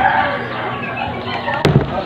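Chunks of peeled sweet potato handled in a plastic bowl, with one sharp knock about three-quarters of the way through, over a murmur of background voices.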